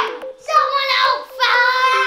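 A child's high voice in two drawn-out, wavering sung notes, the second starting about three quarters of the way in.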